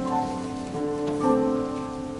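Instrumental keyboard music playing held chords, the notes changing every half second or so, over a faint rustling haze.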